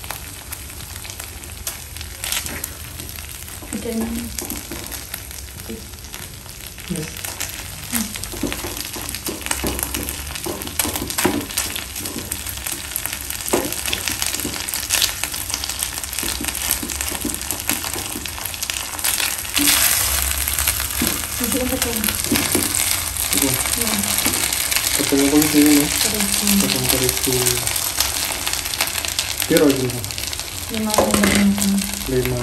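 Minced meat and onions frying in margarine in a nonstick pan, sizzling steadily, with a silicone spatula scraping and stirring against the pan in frequent short strokes. The sizzle grows louder in the second half.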